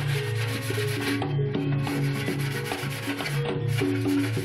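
Sandpaper rubbing back and forth on the rim of a plastic water gallon jug, over background music with bass notes and a steady percussive beat.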